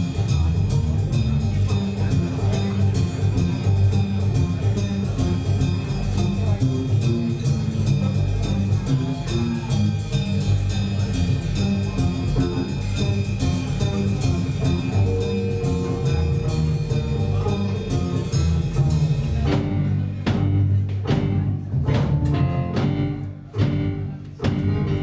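A live jazz band of drum kit, electric bass, upright double bass and keyboards playing an instrumental passage. A little before the end the dense full-band sound drops away to sparser, separate notes and drum hits.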